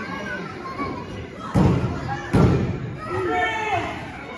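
Two heavy thumps on a wrestling ring mat, less than a second apart, with crowd voices and shouts in a large echoing gym.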